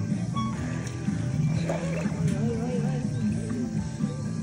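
Background music with a steady low bass line; from about two seconds in, a wavering, warbling higher line runs over it.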